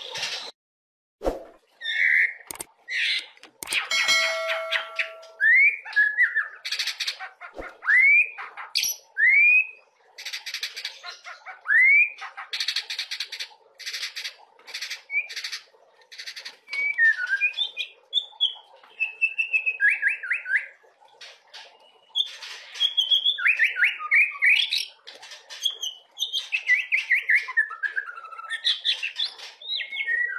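Young white-rumped shama (murai batu) singing a varied song: clear rising whistles, then rapid chattering and fast trilled phrases that tumble downward. A few sharp clicks sound in the first seconds.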